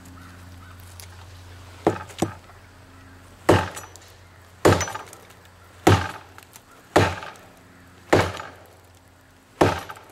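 A heavy Schrade Bolo machete chopping into the notch of a standing tree trunk, its blade biting into the wood. There are two lighter strikes about two seconds in, then six hard chops at roughly one a second.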